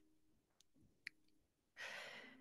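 Near silence, with a faint click about a second in, then a soft audible breath from the speaker near the end, a sigh-like breath drawn before she goes on speaking.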